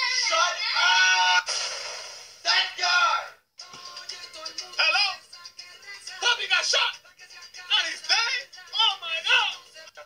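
Music with singing: a string of short sung phrases with sliding pitch, broken by a brief gap about three and a half seconds in.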